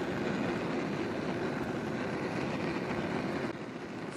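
Homemade tin-can vaporizing liquid-fuel burner running at full flame: a steady rushing roar of vaporized fuel burning, a little quieter near the end.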